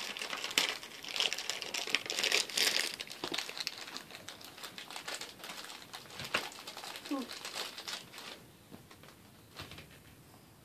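Shiny black foil wrapper of a blind-box vinyl mini figure crinkling as a child's hands open and handle it; the crinkling is busiest in the first three seconds and dies away after about eight seconds.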